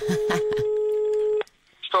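Telephone ringing tone on the caller's line: one steady beep about a second and a half long that stops abruptly, just before the call is answered.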